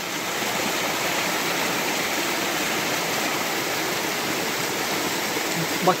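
A spring gushing strongly out of a hillside and pouring over rocks in a steady rush of water. The outflow is newly burst from the ground.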